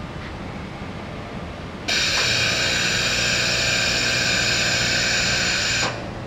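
Pneumatic pitch actuator of a grip-and-pitch lifting tool tilting the gripped part down: a loud steady hiss of air that starts abruptly about two seconds in and cuts off just before the end, with a low hum under it.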